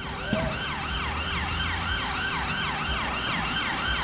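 Siren-style sound effect from the hip-hop soundtrack: short wailing sweeps that fall in pitch, repeating rapidly and evenly, over a steady low hum.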